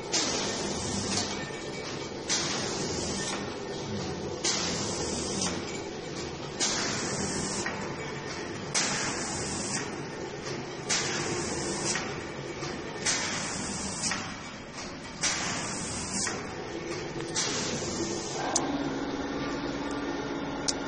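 Facial tissue packaging machine for soft plastic-film packs running: a steady mechanical hum with a short hiss about every two seconds.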